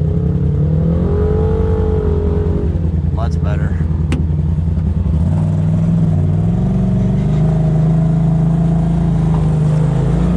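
Turbocharged Polaris RZR side-by-side's engine running while driving slowly over a rocky trail, heard from inside the cab. The pitch wavers up and down in the first few seconds, with a couple of brief clicks, then settles into a steady drone after about five seconds.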